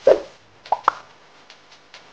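A short, loud plop right at the start, then two quick clicks just under a second in.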